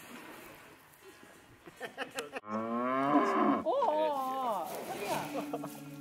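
A cow mooing once, loudly: a long call starting about two and a half seconds in and lasting about two seconds, its pitch bending higher toward the end.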